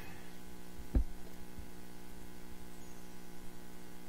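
Vibrating table running under a solar panel, a steady electric hum as it shakes the freshly poured silicone encapsulant so it levels out and the air bubbles work free. A single knock about a second in.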